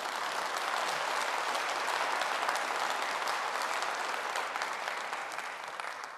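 Conference hall audience applauding: dense, steady clapping that eases off slightly near the end.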